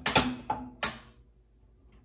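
Three sharp metallic clicks in the first second, each with a brief ring, as the group-head controls of an ECM Synchronika espresso machine are worked by hand.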